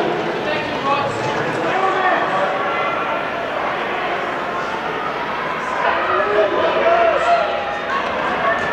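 Many voices chattering at once, echoing in a large indoor track hall, with no single speaker standing out.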